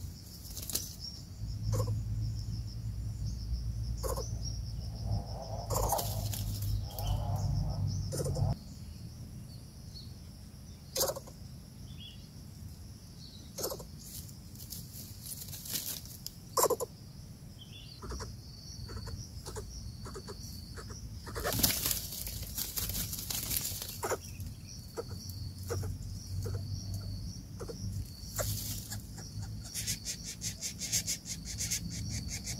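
Steady high-pitched insect drone, with scattered sharp clicks and rustles throughout and a low rumble for the first eight seconds.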